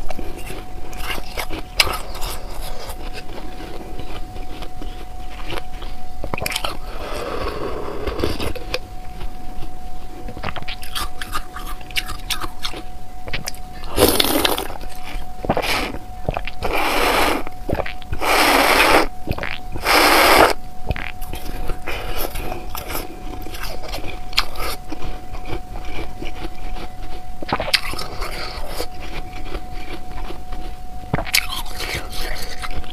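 Ice frozen in a plastic water bottle being scraped and bitten close to the microphone: a run of small crackling clicks, with four louder drawn-out scraping sounds about halfway through.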